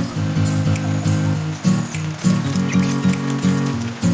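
Background music with a steady beat over a moving low melody line.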